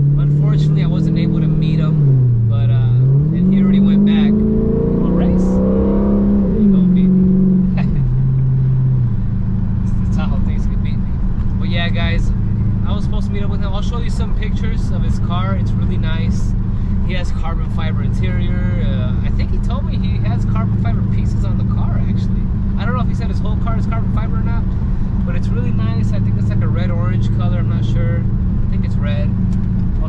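Dodge Charger engine running, heard from inside the car: its pitch dips, climbs and drops again over the first several seconds as the car changes speed, then holds a steady drone. A man talks over it.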